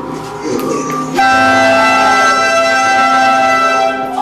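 A loud horn blast, several steady tones sounding together like a chord, starts suddenly about a second in and holds for nearly three seconds. Before it come brief voices.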